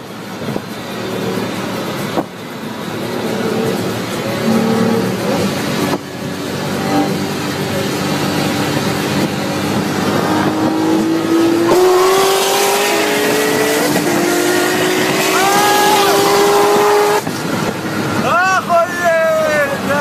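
A car engine pulling hard under full throttle over steady road and wind noise: its note climbs, drops at an upshift about fourteen seconds in, climbs again, and cuts off suddenly a few seconds later. Excited voices follow near the end.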